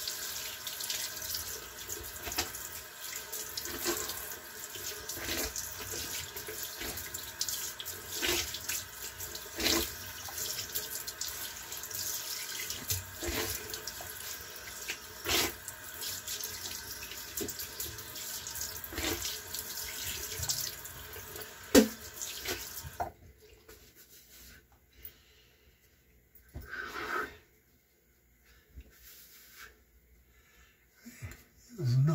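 Tap water running into a bathroom sink, with scattered splashes and knocks as the face is rinsed after a straight-razor shave. The tap shuts off about 23 seconds in, leaving quiet broken by a couple of small sounds.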